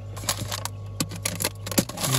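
Frozen ice-cream bars in plastic wrappers crinkling and crackling as a hand moves them about in a portable fridge-freezer, a quick run of sharp little clicks over a steady low hum.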